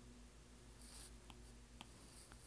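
Faint stylus tapping and scratching on a tablet screen: a short scrape about halfway through, then a couple of light taps.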